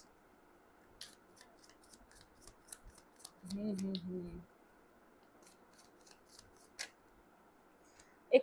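A deck of tarot cards being shuffled by hand: a scattered run of faint, quick card clicks and flicks. A short hummed voice sounds about three and a half seconds in.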